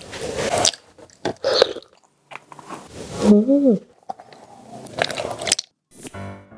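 Close-miked chewing and biting of tender soy-sauce-braised pork belly, in separate bursts of mouth sounds, with a short hum from the eater a little after three seconds in.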